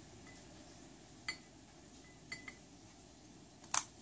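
Quiet room tone broken by a few light clicks and taps of small objects handled on a table: one about a second in, two close together past the middle, and a sharper one near the end.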